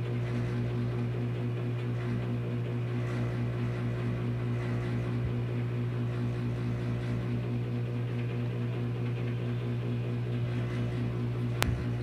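A steady low electrical or mechanical hum with faint even overtones, with a single sharp click shortly before the end.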